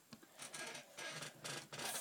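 Paintbrush rubbing in short strokes across a model aeroplane's wing, about four strokes in the second half.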